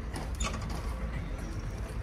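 Quiet outdoor market ambience: a steady low rumble with faint distant voices and a few light mechanical clicks about half a second in.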